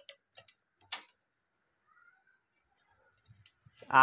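A few faint clicks and taps from speaker wires being handled on the woofer frames and terminals, the sharpest about a second in.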